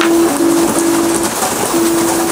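Rain hissing steadily, with a single low note held in several stretches with short breaks over it.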